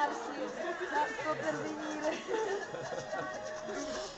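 Backstage chatter: several voices talking over each other, with music playing in the background.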